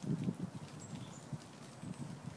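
Low, irregular buffeting rumble on the phone's microphone that dies down after about the first half second, with a few faint, short, high chirps.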